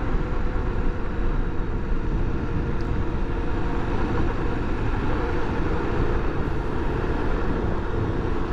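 Honda XRE300's single-cylinder engine running steadily at a road cruise of about 50 km/h, mixed with steady wind rush on the microphone.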